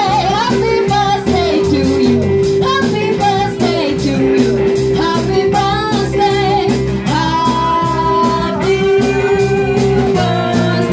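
Live band playing with drum kit, electric guitar and keyboard under a singer's voice, over a steady drum beat.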